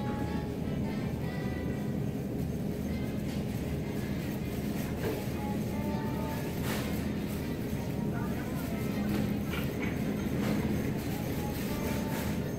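Busy supermarket checkout ambience: background music playing over the store's sound system, mixed with the murmur of shoppers' and cashiers' voices and a steady low hum. A few short beeps and clicks come from the checkout lanes.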